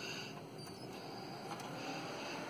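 Cooling fans of a Motorola MTS2 TETRA base station's modules running, a steady airy whoosh that sounds like a hairdryer.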